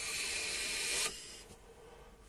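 About a second of steady hiss from a puff on a sub-ohm vape tank, the Horizon Falcon King firing at 80 watts, then it cuts off.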